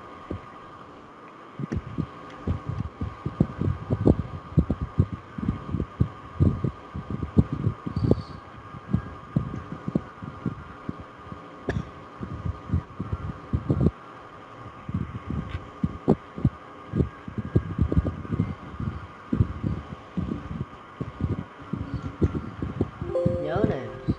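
Irregular low thumps, a few a second, from keystrokes and mouse clicks at a computer desk picked up by the microphone, over a steady thin hum.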